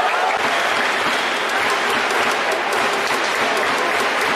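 Stadium crowd noise: a steady din of clapping with voices mixed in.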